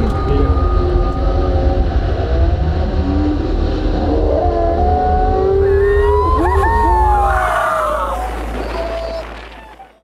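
Steady low rumble of boat engines and wind on the microphone, with voices whooping and shouting over it from about three seconds in as a surfer rides a big barrel. Everything fades out near the end.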